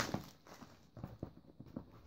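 A plastic-wrapped parcel being handled and turned over in the hands: a scatter of soft taps and knocks with light rustling of the plastic wrap.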